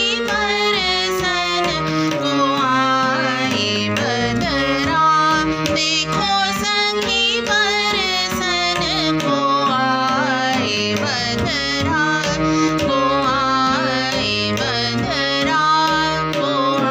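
Female voice singing a chota khayal in raga Desh, set in teentaal, with melodic runs, accompanied by harmonium and regular tabla strokes.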